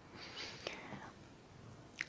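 A man's faint, breathy whisper or breath in the first second, close on a clip-on microphone, then low room tone.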